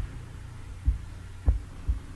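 Three soft, low thumps over a steady low hum, the thumps coming roughly half a second apart. They are the mouse being clicked to move the quiz to the next question.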